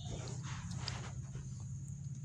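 Quiet background noise: a low steady hum with a few faint, indistinct sounds in the distance.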